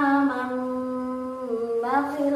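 A woman's voice reciting a Quranic verse in the slow, sung Umi-method tune, holding long notes that step down a little in pitch and lift again near the end.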